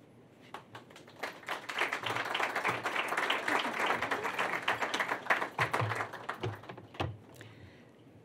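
Audience applauding: a dense patter of clapping that builds about a second in and dies away shortly before the end.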